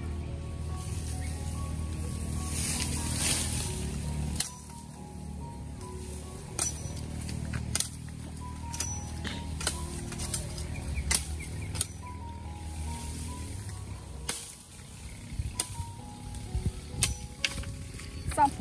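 Machete chopping green bamboo stalks: sharp chops at irregular intervals, over background music.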